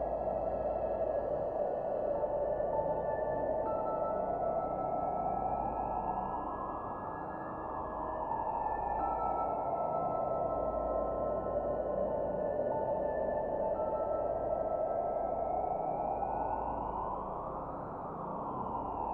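Ambient meditation music: a soft rushing wash that sweeps up and back down in slow waves about every ten seconds, under held synthesizer notes that shift pitch now and then and a low drone.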